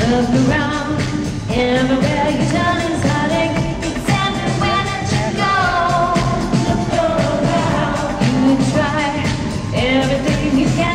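Live dance-pop concert music played loud through an arena sound system, with a woman singing a held, gliding melody over the backing track.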